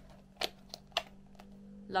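A few light clicks and taps from sunglasses and their case being handled, over a faint steady hum.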